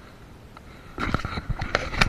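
Open-air seaside background: a faint steady hiss, then about a second in, louder gusty wind on the microphone with a few sharp knocks.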